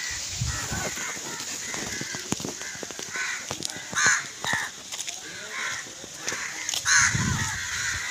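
Birds calling outdoors: a series of short calls repeating every second or so, with faint steps along the lane.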